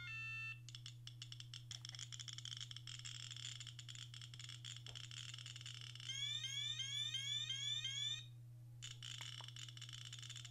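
Radiacode 102 scintillation detector clicking rapidly as it counts radiation from uranium ore, after a brief run of stepped beeps at the start. About six seconds in, its rate alarm sounds for about two seconds, a repeated rising chirp. The clicking then pauses briefly and starts again.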